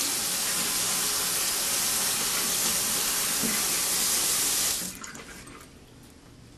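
Water running steadily from a bathroom sink faucet into the basin while hands are washed under it, then shut off abruptly about five seconds in.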